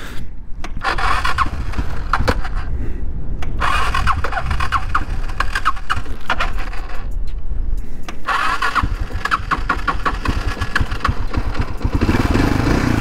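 A 1991 Suzuki DR650's electric starter cranking its 644cc single-cylinder engine in three bouts after a stall, the cold engine reluctant to catch. The rider puts it down to not using the choke.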